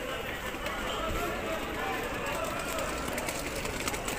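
Outdoor urban street ambience: a steady background noise with faint, distant voices.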